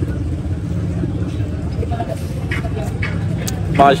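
Steady low rumble of traffic on a busy city street, with faint voices of passers-by.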